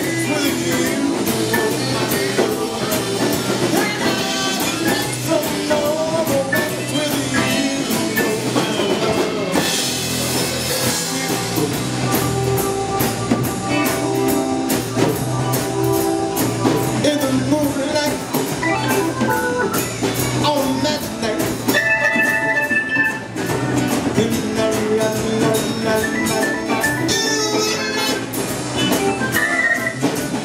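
Live blues band playing: drum kit, electric and acoustic guitars and keyboard.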